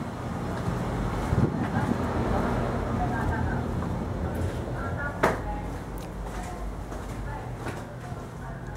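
Faint voices of people talking in the background over a steady low rumble, with one sharp knock about five seconds in.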